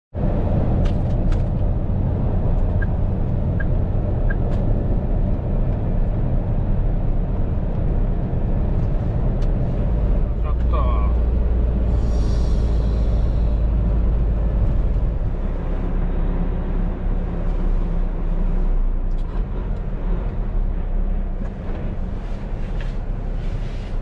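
Heavy truck's diesel engine running, heard from inside the cab while driving, a deep steady rumble that grows heavier for a few seconds in the middle. A short hiss comes about twelve seconds in.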